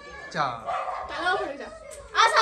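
A young child whining: a short cry that falls steeply in pitch about half a second in, followed by softer whimpering sounds.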